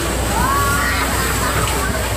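Bumper-car ride din: a steady low hum under voices, with a rising high-pitched cry about half a second in.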